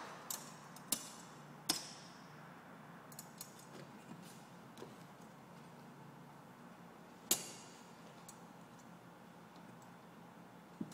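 Wire being bent on a homemade metal jig for making two-way slide buckles: sparse light metallic clicks and taps, about seven in all, the loudest one about seven seconds in.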